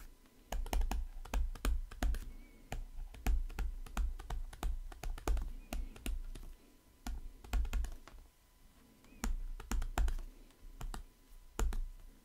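Digital stylus tapping and scraping on a tablet surface during handwriting: an irregular run of small sharp clicks with soft low thumps, pausing briefly about eight seconds in before resuming.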